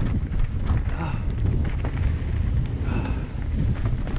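Steady low wind rumble on a camera moving fast along a dirt trail, with frequent small rattles and knocks from the rough ground.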